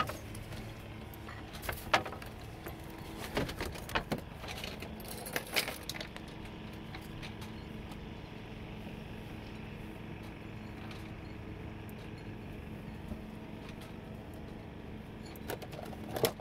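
A few sharp knocks and clatters in the first six seconds, like gear being handled on the deck, then a steady low hum with a faint hiss.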